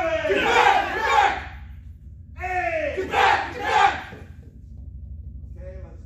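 A group of baton trainees shouting together in unison twice, each shout in two quick parts with the pitch falling. A steady low hum runs underneath.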